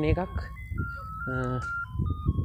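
An electronic jingle playing a simple tune in thin, single beeping tones that step up and down, starting about half a second in. A voice speaks briefly over it.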